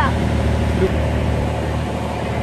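Boat engine running steadily at idle, a low, even sound.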